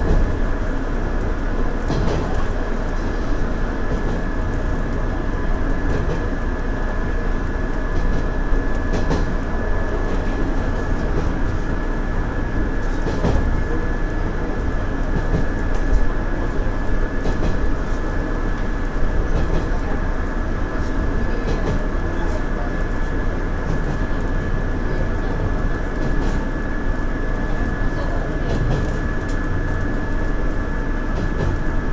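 Steady running noise of a 117 series electric train, heard from the front of the train: wheels on rail with scattered light clicks and a faint steady high tone.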